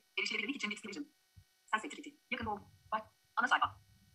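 Short, broken bursts of speech over a faint steady hum.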